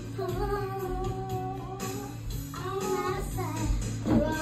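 A child singing along to a karaoke backing track, holding long notes over a steady bass line.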